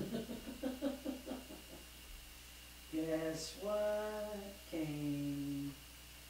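A voice gives a few quick syllables, then sings three long held notes unaccompanied, the middle note highest and the last lowest, in a small room.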